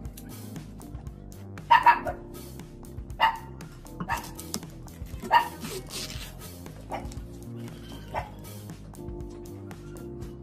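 A dog barking repeatedly over steady background music, with the loudest pair of barks about two seconds in.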